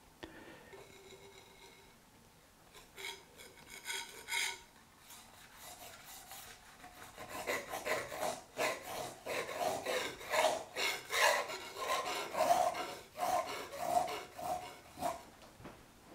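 Palette knife scraping oil paint onto a painting board. A few light strokes come a few seconds in, then a run of short scrapes at about two a second through the second half.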